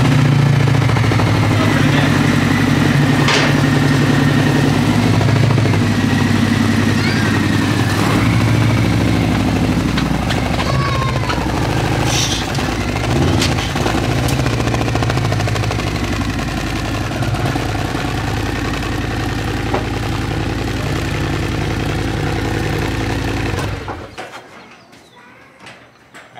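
Harley-Davidson Road Glide's V-twin engine running, with the throttle changing a few times as it is ridden up onto a pickup bed, then switched off about 24 seconds in.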